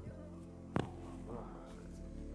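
A single sharp crack about three-quarters of a second in, from a woman's neck being twisted by hand in a cervical twist, over soft background music.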